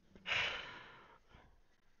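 A man's single breathy exhale, like a sigh, close on a headset microphone, starting sharply and fading out over about a second.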